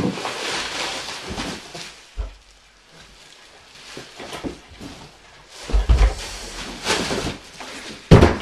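Bubble wrap and a cardboard box rustling and crinkling as a longboard is pulled out of its packaging. There is a dull thump about two seconds in and heavier thumps near the end as the board and box are handled.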